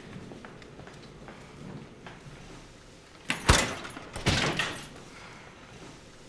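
A door banging: two sharp bangs about a second apart, the first the louder, with a short rattle after each.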